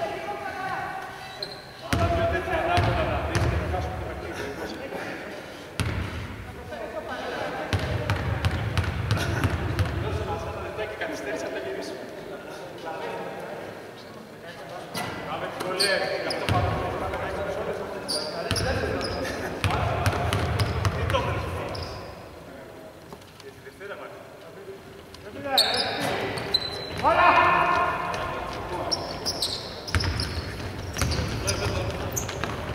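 A basketball bouncing on a hardwood court amid players' shouts and calls, in a large, mostly empty arena.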